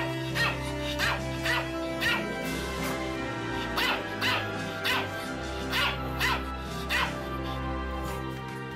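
A Pomeranian barking in about a dozen short, sharp, irregularly spaced barks over background music with held notes.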